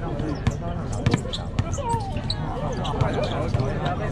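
A basketball bouncing a few times at an irregular pace on a hard court, over the steady chatter and calls of a crowd of students.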